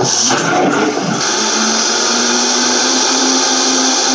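High-powered Vitamix blender running at full speed, blending hemp hearts and water into hemp milk. It is a loud whir with a steady hum, rough for about the first second and then even.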